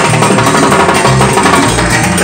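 Live tropical dance orchestra playing, with timbales and a drum kit driving the rhythm.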